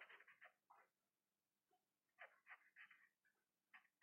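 Near silence, with the faint scratching of a ballpoint pen writing on paper in short strokes and brief pauses.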